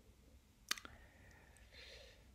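A sharp click, followed at once by a softer second click, over quiet room tone.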